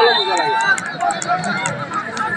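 People talking and calling out close by, over the general noise of spectators.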